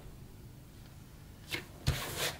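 A printed paper sheet being pressed down by hand onto a cutting mat on a desk: quiet at first, then a short rustle and a dull thump near the end.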